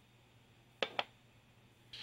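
Two sharp clicks about a fifth of a second apart: a billet aluminum oil fill cap being set down on a metal bench.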